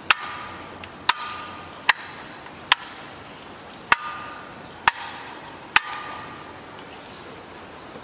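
Old wall-mounted tumbler light switches flicked by hand: seven sharp clicks about a second apart, some with a brief metallic ring, stopping about six seconds in.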